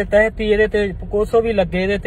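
A man speaking Punjabi with short pauses, over a low steady hum.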